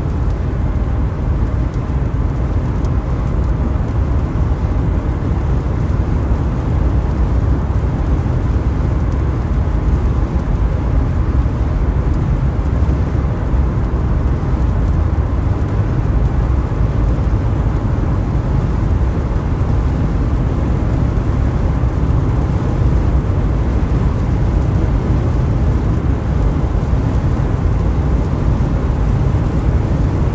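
Steady low road and engine rumble heard inside a car cruising at highway speed.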